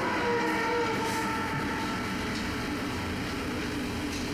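Exaggerated, drawn-out voiced yawns from several people, overlapping: long held tones that slowly sink in pitch.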